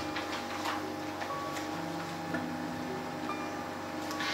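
Quiet room tone with a steady hum through the microphone, and a few faint rustles and ticks as sheets of paper are picked up.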